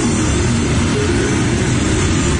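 A rushing sound effect with a deep rumble, laid over background music with a repeating pattern of low synth notes.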